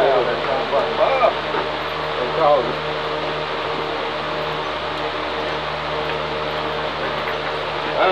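Electric fan running with a steady hum under the shed roof, with brief bits of talk in the background near the start and about two and a half seconds in.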